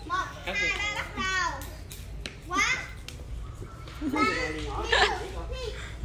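Young children's voices calling out and chattering during play, in several short high-pitched calls with pauses between them.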